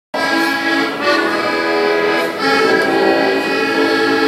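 Diatonic button accordion (heligonka) playing a folk tune in sustained reedy chords with a moving melody line.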